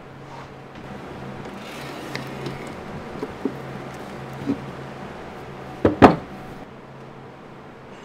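Over a steady low hum, a few light clicks and knocks of something being handled. About six seconds in comes a loud double knock, two hits in quick succession.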